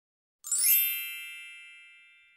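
A bright, bell-like chime from a logo intro starts about half a second in, then rings out and fades slowly.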